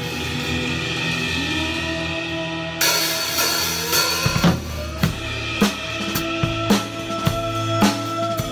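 Drum kit played with wooden sticks over a pop song's backing track. The first few seconds hold the backing track's sustained chords; about three seconds in the drums come in loudly, and from about four seconds on kick and snare keep a steady beat of roughly two strokes a second.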